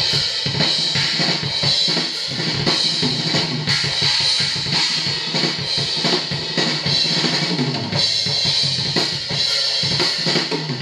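Full acoustic drum kit played continuously for a level check, with kick drum, snare and cymbals all sounding together in a steady groove.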